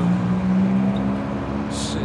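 A motor vehicle's engine running in a steady drone, with a brief hiss near the end.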